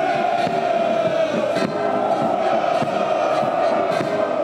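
Ranks of soldiers shouting a long, drawn-out "Ura!" together, the massed voices holding one slowly falling note.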